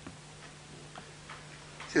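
Faint ticking, a few soft ticks about half a second apart, over a low steady hum.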